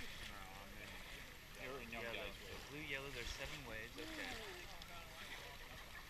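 Indistinct chatter of several people talking, not close to the microphone, over a low rumble of wind and water.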